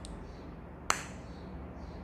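A single sharp click about a second in from handling a lip gloss tube as its applicator wand is drawn out, over a faint low background hum.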